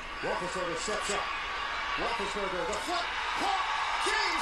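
Television play-by-play commentary over stadium crowd noise from an NFL game broadcast. The crowd noise grows a little louder in the second half as the pass is completed in the end zone.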